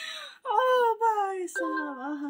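A voice wailing in two long drawn-out cries, the first sliding downward in pitch and the second held low and steady, after a short breathy rush at the start.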